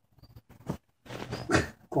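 Belgian Malinois puppy making short vocal sounds while being handled: a couple of brief ones, then a longer run of noises about a second in.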